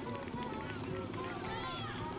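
Voices of spectators and water-station volunteers calling out at a road marathon as runners pass.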